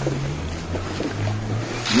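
Low, steady rumble of wind on a phone microphone outdoors, with faint voices of a group in the background.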